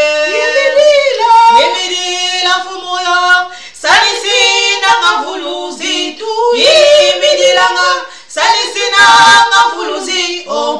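Women singing a praise song, with long held notes and sliding pitch, in phrases broken by short breaths about four and eight seconds in.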